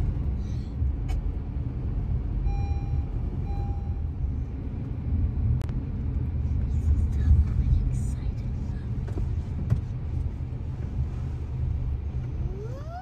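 Steady low road rumble inside a moving car's cabin, with two short electronic beeps about three seconds in.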